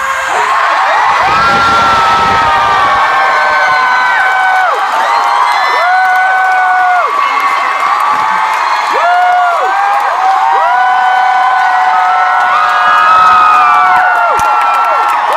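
Concert crowd screaming and cheering, with many high, held screams from fans close by, each rising at its start and falling away at its end.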